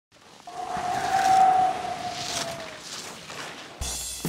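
Skis hissing across groomed snow as skiers carve past, swelling and then easing, under a steady whistle-like tone that dips slightly in pitch and fades out about halfway through. Music with a beat comes in just before the end.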